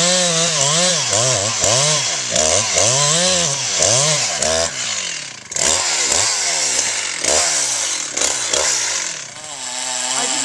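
Two-stroke chainsaw cutting into a pine trunk, its engine pitch rising and sagging over and over as the bar loads up in the cut. About halfway through the saw is taken out of the cut and its revs rise and fall in a series of falling blips before it settles again near the end.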